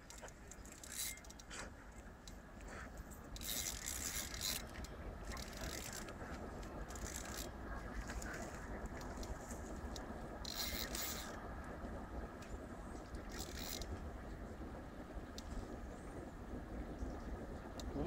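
Faint scraping and rustling in several short spells of up to a second, over a low steady rumble.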